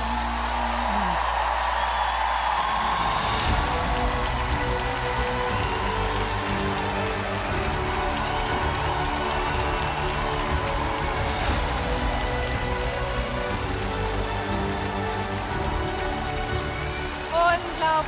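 The band's final chord ends about a second in, then a large studio audience applauds and cheers, with music still playing underneath.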